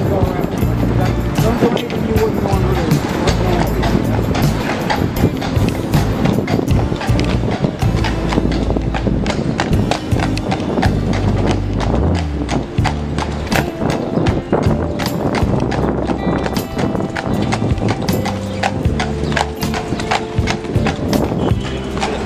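A carriage horse's hooves clip-clopping on a paved city street at a steady walk, mixed with background music that has a deep bass line.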